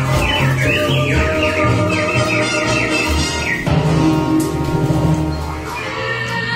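Soundtrack of an animatronic-bird show: music with a steady bass beat and a run of quick, falling bird-like whistles for the first three seconds or so, then the music changes and carries on.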